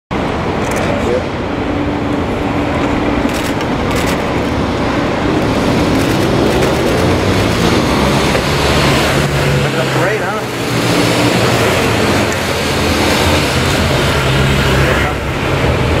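Steady street and traffic noise with motorcycle engines running as an escort of motorcycles rides toward the listener, a low engine hum building from about halfway through.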